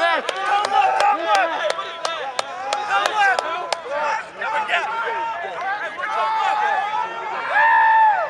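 Many people's voices talking and calling out over one another on a football field. Sharp clicks come about three a second through the first four seconds, and a long drawn-out shout comes near the end.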